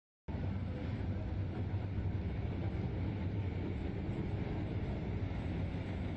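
Digital silence, then from about a third of a second in, a field of sprint cars running steadily at low speed as they roll around in formation before a heat race start.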